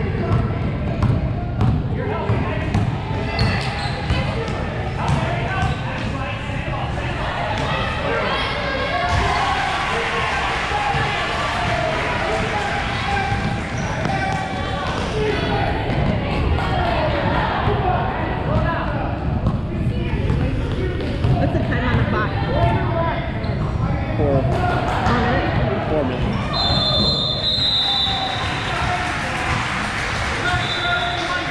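A basketball bouncing on a hardwood gym floor as it is dribbled, in repeated thuds that come thickest in the first several seconds. Voices of players and spectators carry on underneath in the large gym.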